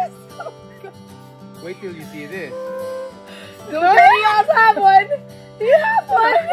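Background music with a plucked acoustic guitar runs throughout. About three and a half seconds in, loud, excited, high-pitched voices shout and laugh for over a second, and they start up again near the end.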